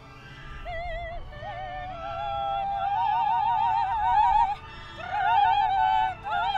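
Two female voices singing opera with wide vibrato, the sound swelling over the first few seconds, with a brief break a little before the fifth second before the singing resumes.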